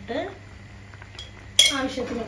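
A spoon clinks sharply against cookware once, about one and a half seconds in, with a short ring after it.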